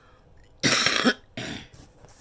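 A woman coughing twice, a longer harsh cough about half a second in and a shorter one right after; she is ill.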